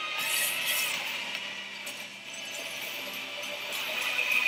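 Soundtrack of a TV drama clip montage: music mixed with sound effects, with several sharp hits.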